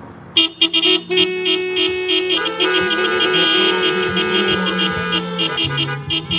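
Music from a live worship band's keyboard: after a quiet, fading passage, loud sustained chords come in about half a second in, with a few stuttering starts before they settle into a steady sound.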